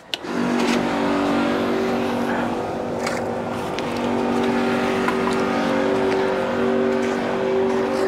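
Electric AdBlue transfer pump on an IBC tote tank switched on and running with a steady hum, with a few light clicks from handling the hose and nozzle.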